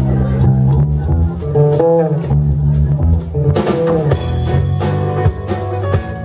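Live rock band playing loudly: two electric guitars, electric bass and drum kit, with bending guitar notes about two and four seconds in.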